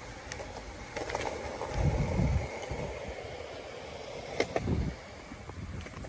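Outdoor street ambience with a steady traffic hum. Two louder low rumbles come about two seconds in and again near the end, with a few sharp clicks among them.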